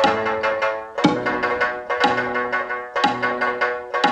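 Mongolian shanz (shudraga), a three-stringed long-necked lute, played in tremolo: each note is plucked rapidly over and over, and the player moves to a new note about once a second.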